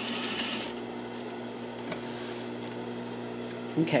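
Sewing machine running briefly to back tack the end of a seam, stopping less than a second in; a few faint clicks follow.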